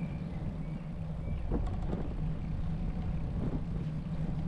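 Bicycle riding along a smooth asphalt bike path: steady low rumble of tyres and wind on the microphone, with a couple of light knocks or rattles about a second and a half in.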